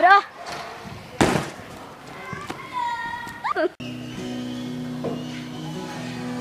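Excited girls' voices and high squeals, with a sudden burst of noise about a second in. About four seconds in the sound cuts abruptly to music with steady held notes.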